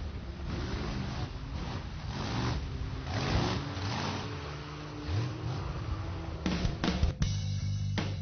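Rock music with guitar over a mud-racing truck's engine revving, its pitch rising and falling several times.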